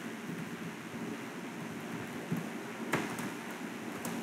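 A few computer keyboard keystrokes, the sharpest click about three seconds in, over a steady hiss of room noise.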